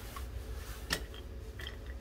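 One sharp plastic click about a second in, with a few fainter ticks, from the parts of a plastic rotary drum grater being handled, over a steady low background rumble.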